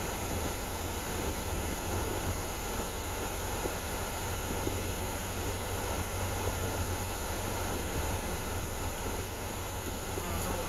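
Steady low rumble and hiss of a car cabin: the car's running noise heard from inside, with no change in level.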